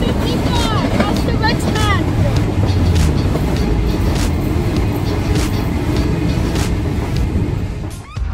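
Sydney Waratah electric suburban train running past just below, a steady heavy rumble with wind on the microphone and a few short chirps in the first two seconds.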